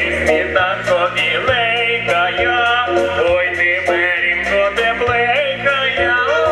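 Ukrainian folk song performed live: a man and a woman singing together over instrumental accompaniment with sustained bass notes and a steady beat.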